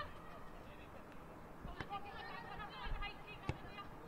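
Faint field sound of a football match: players' distant voices calling out on the pitch, with a sharp ball kick near the end.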